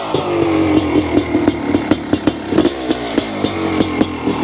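1997 Honda CR500's single-cylinder two-stroke engine running at a lumpy idle, its pitch settling down a little over the first second and a half, with sharp irregular pops several times a second.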